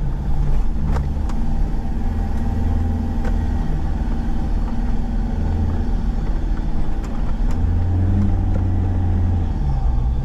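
Toyota Prado four-wheel drive's engine running at low revs as it crawls along a rutted dirt track, its pitch rising and falling with the throttle. A few sharp knocks and rattles come from the vehicle jolting over the ruts.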